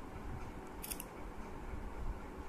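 Two or three quick crisp clicks about a second in, as small shape pieces of a shape-matching game are handled and pressed onto a pattern card, over a steady low background rumble.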